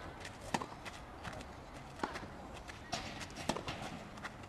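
Footsteps and shoe scuffs of a tennis player moving on an outdoor hard court, an irregular run of light clicks with a few sharper knocks.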